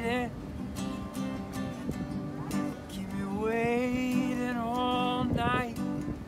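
Acoustic guitar strumming slow chords, with a voice singing a long wavering wordless note that ends just after the start and another that runs from about three seconds in until shortly before the end.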